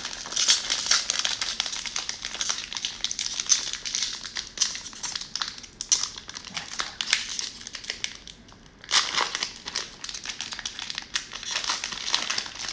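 Cellophane wrapper of a trading-card cello pack crinkling as it is handled and opened, with a louder burst of crackling about nine seconds in.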